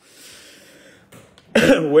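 A man coughs once, sharply, about one and a half seconds in, and goes straight into speaking. Before it there is a soft, breathy hiss.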